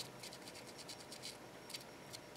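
Paint marker tip scratching and dabbing along the edges of a small wooden cutout, a faint run of short, irregular scratches.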